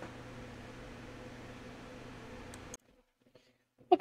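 Steady low hum with a faint hiss, cutting off abruptly about three-quarters of the way through into near silence.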